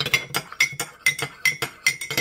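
Metal spoon stirring powder into water in a mug, clinking rapidly against the mug's side, about four or five clinks a second, each with a short ring.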